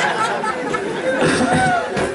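Voices talking: speech and chatter, with several people apparently talking at once.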